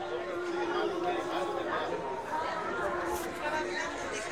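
Chatter of several visitors talking at once, overlapping voices in a crowd.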